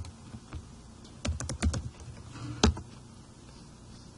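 Computer keyboard typing: a quick run of several keystrokes about a second in, with single taps before and after.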